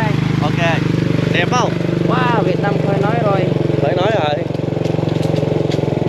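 Small motorbike engine running steadily under way, a constant low drone, with men's voices talking over it.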